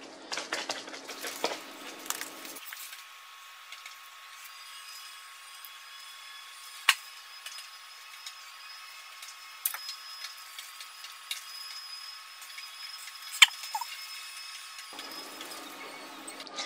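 Gloved hands patting minced chicken flat on a plastic cutting board, then a knife cutting the mince into squares, with a few sharp taps of the blade on the board, the clearest about seven seconds in and again near the end.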